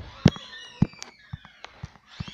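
A series of sharp knocks and clicks, about six in two seconds and loudest near the start, with faint squeaky tones falling in pitch between them.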